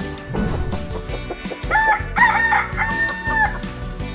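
A rooster crowing, cock-a-doodle-doo in three parts with the last held longest, over music.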